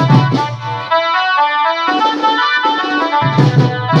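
A band party plays a Koraputia folk song through horn loudspeakers: drums with a melody line over them. About a second in, the drums drop out and the melody carries on alone; the drums come back in after about three seconds.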